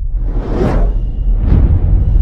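Cinematic logo-intro sound effects: a deep, steady bass rumble with whooshes that swell and fade, one peaking about half a second in and another about a second and a half in.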